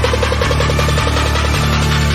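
Electronic intro theme music: a fast, even pulsing figure over sustained bass notes that shift every second or so.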